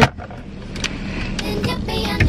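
Steady low rumble of a car idling, heard inside the cabin, with a sharp click at the very start and a few faint clicks after it.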